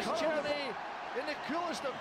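Match commentary: a male football commentator speaking over the play.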